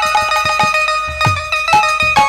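Instrumental kirtan music: a khol drum's deep bass strokes, each sliding down in pitch, about two a second, under a melody of held notes that step from one pitch to the next.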